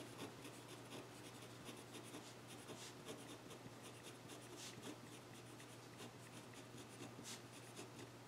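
Pen writing on paper: faint, irregular scratching strokes as words are written out by hand.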